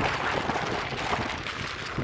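The tyres of a Van Nicholas Rowtag gravel bike, including its 2.1-inch front tyre, rolling over a sandy gravel forest track. The result is a steady rushing noise.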